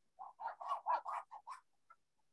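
Chalk drawn over a painted stretched canvas: about seven short strokes in quick succession.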